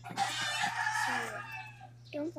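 A rooster crowing once: one loud, long call of about a second and a half that trails off at the end.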